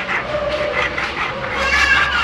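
Hand file rasping on a silver ring held against a wooden bench pin, in repeated short strokes. A brief high-pitched whine comes near the end.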